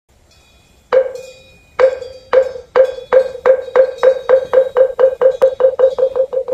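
Moktak (Korean Buddhist wooden fish) struck with a mallet: a first stroke about a second in, then strokes that come closer and closer together into a quick roll of about five a second. This speeding-up roll is the traditional moktak opening to a chanted recitation.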